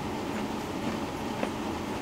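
Steady low rumble of hallway room noise, with a couple of faint ticks, one early and one about a second and a half in.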